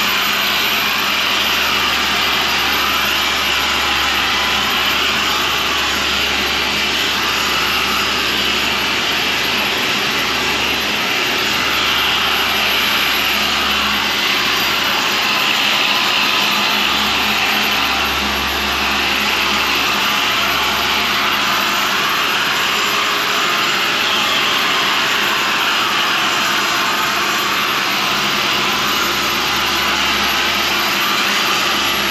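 Handheld electric polisher with a foam pad running steadily against a truck's painted steel hood, a continuous whirring hum as it polishes the paint.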